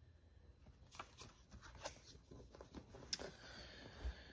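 Near silence, with a few faint, brief paper rustles and clicks as the pages of a picture book are handled and turned.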